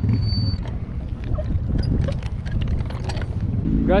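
Steady low rumble of wind on the microphone and street traffic, with scattered light clicks and knocks.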